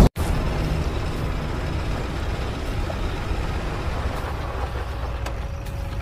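Low, steady rumble left in the wake of an explosion, slowly dying down.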